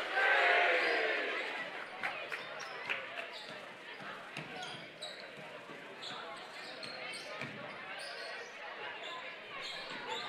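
A basketball being dribbled on a hardwood gym floor, with scattered single bounces in a large, echoing hall. Crowd voices are loudest in the first second or so and then die down.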